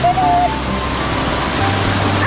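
A mountain stream rushing over rocks, a steady wash of water noise, with background music over it; a sliding note settles into a held tone at the start.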